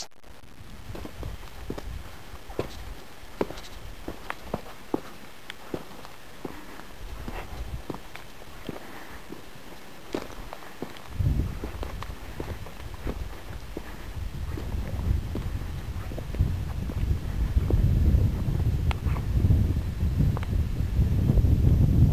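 Footsteps crunching on rocky ground, about one step every three-quarters of a second. From about halfway through, a low, uneven rumble of wind buffeting the microphone builds up and grows louder toward the end.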